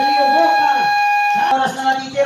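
Electronic game buzzer sounding one long, steady tone that cuts off abruptly about one and a half seconds in.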